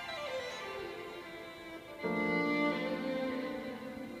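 Violin played with a bow: a run of notes stepping down in pitch, then a louder, lower note held from about halfway through, ringing in the cathedral's reverberant space.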